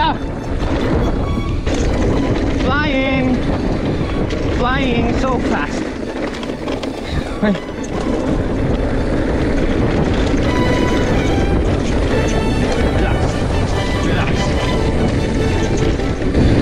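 Wind rushing over the camera microphone and tyres rolling over a dirt singletrack as a mountain e-bike is ridden at race pace. A few brief wavering voice-like sounds come about three and five seconds in.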